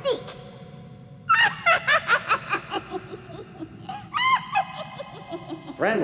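A cartoon character's voice in two runs of quick, pitched, laugh-like bursts, the first starting about a second in and the second about four seconds in. A steady low hum runs underneath.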